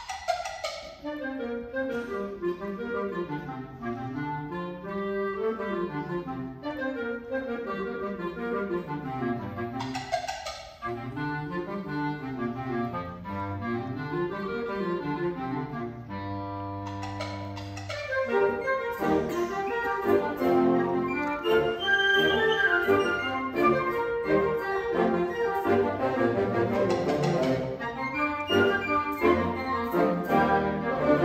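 Concert band of woodwinds, brass and percussion playing live. It opens on a sharp accent with low rising-and-falling runs, has another accent about ten seconds in, a held chord around sixteen seconds, then the full band comes in louder.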